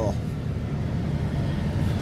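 Mercedes diesel engine of a Neoplan Skyliner double-deck coach idling, heard from inside the upper deck as a steady low hum.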